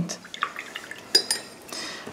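Paintbrush dipped into a jar of rinse water, clinking a few times against the glass with small splashes.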